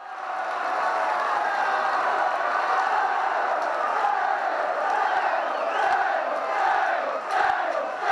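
A large football crowd chanting and cheering: a dense mass of voices that starts abruptly and keeps a steady level.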